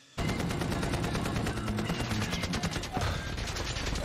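Rapid, continuous machine-gun fire from a helicopter gunship in a film soundtrack, with a low musical score underneath. It starts a fraction of a second in and keeps up a fast, unbroken rattle.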